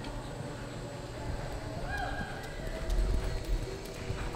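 Horse's hoofbeats loping on the dirt floor of an arena, with heavier low thuds about three seconds in.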